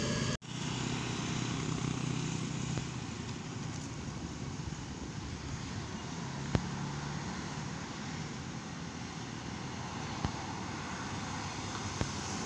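Steady road-traffic noise from vehicles on the bend: a low engine hum from motorcycles and an approaching coach under a constant rush of road noise. It is broken by two short clicks.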